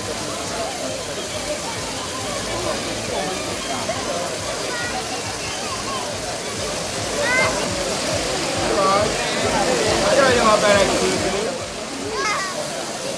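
Water pouring from fountain spouts into a bathing pool, splashing steadily, under the chatter of a crowd of bathers, with a few raised voices in the second half.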